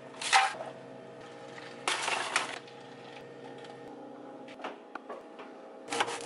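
Tortilla chips poured from a crinkly bag into a metal loaf pan: two short bursts of rustling and rattling, about half a second and two seconds in, over a faint steady hum.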